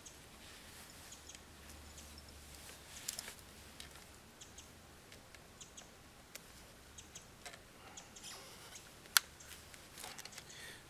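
Scattered small clicks and rustles of gloved hands handling a wire snare and twigs at a branch, with one sharp click near the end.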